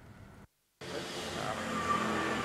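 Outdoor road traffic noise, an even rush that grows gradually louder, starting just under a second in after a brief moment of dead silence.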